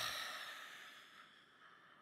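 A man's long, breathy sigh of awe into a microphone, loudest at the start and fading away over about a second and a half.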